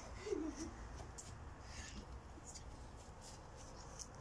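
Quiet back-garden ambience: one short voiced sound near the start, then a faint low rumble with a few brief high chirps.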